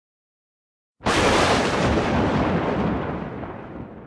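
Explosion-like boom from a show-intro sound effect: it hits suddenly about a second in after silence, then rumbles and dies away over about three seconds.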